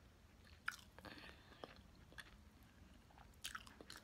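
Faint chewing of food with the mouth closed, soft wet mouth clicks scattered through it and a few slightly louder ones about three and a half seconds in.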